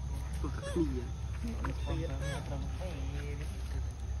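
A person talking over a steady low rumble.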